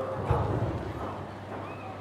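A man's voice through a microphone, briefly near the start, then a pause with a steady low electrical hum from the sound system.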